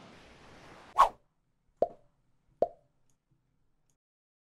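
Faint room tone stops abruptly with a sharp pop about a second in. Two shorter, duller pops follow about 0.8 s apart, then dead silence.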